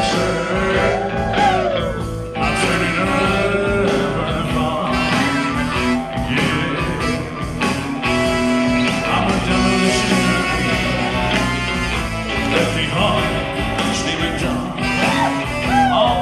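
Live blues-rock song with a man singing into a microphone, the vocal most plain near the start and near the end.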